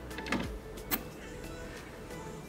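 A record player's tonearm and controls being handled by hand: two sharp clicks about half a second apart over a faint steady background.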